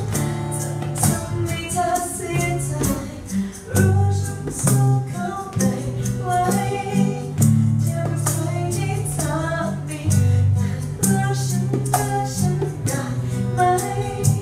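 Live acoustic song: a woman singing a melody into a microphone over acoustic guitar and hand-drum percussion played with the hands.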